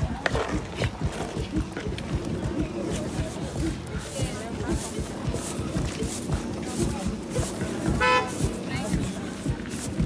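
Crowd chatter with repeated dull thuds of wooden pestles pounding fonio grain in wooden mortars. A short honking toot sounds about eight seconds in.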